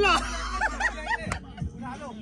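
Men laughing and calling out, with music in the background and one sharp click about a second and a half in.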